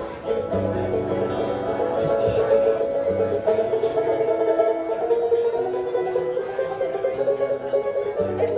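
A bluegrass band playing, with a banjo picking over acoustic guitar and upright bass.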